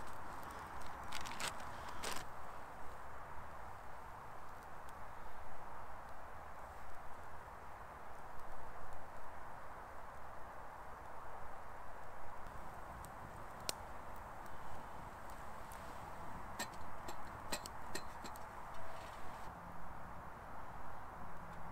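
Small twig fire in a titanium wood stove, freshly lit with wood wool, giving sparse sharp crackles and pops over a steady rushing hiss of background noise. The pops come in a few clusters, near the start and again in the second half.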